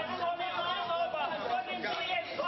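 Several people's voices talking and calling out at once, overlapping into chatter.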